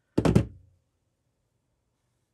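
Needle-nose pliers set down on a cutting mat: a quick clatter of three or four knocks.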